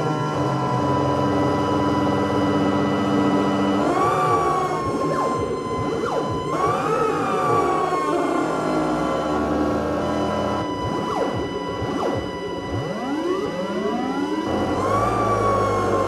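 Live electronic drone music: sustained high tones over a low drone, with swooping pitch bends about four seconds in, again around seven seconds and near the end, and a run of rising and falling glides about two-thirds through.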